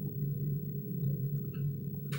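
A steady low hum with no other sound.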